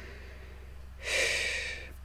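A man sighing once, about a second in: a long breath out that fades away.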